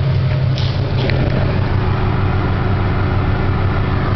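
Subaru flat-four engine swapped into a 1974 VW Super Beetle, idling steadily with the air-conditioning compressor running, its idle raised by the engine management to carry the compressor load.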